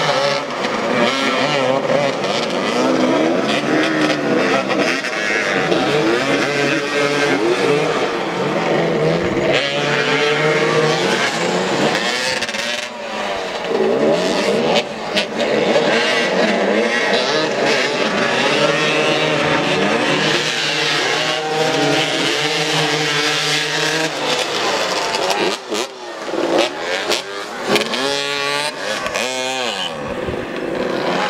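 Several motoball motorcycles' engines running and revving together, their pitches constantly rising and falling as the riders accelerate and back off around the pitch.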